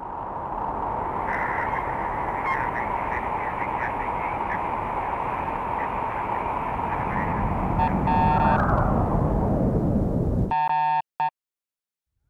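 Science-fiction spaceship sound effect: a steady rushing noise with a hum, then a deepening rumble and a whine falling in pitch over the last few seconds, as of a craft descending. It cuts off suddenly into a short harsh electronic buzz, then one more brief burst.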